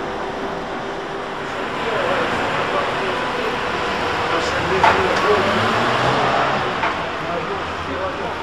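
Trolleybus running noise with a faint steady electric whine, then street noise beside a stopped articulated trolleybus, with voices and a few sharp clicks.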